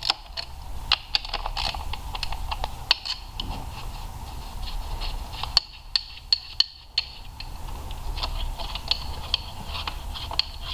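Ratchet wrench clicking and metal tool clinks as the fuel rail bolts are worked loose on the engine, in irregular bursts of sharp clicks with short pauses between.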